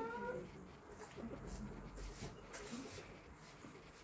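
A man's high, closed-mouth 'mmm' of enjoyment while eating, trailing off about half a second in, followed by faint clicks and smacks of eating by hand from a steel plate.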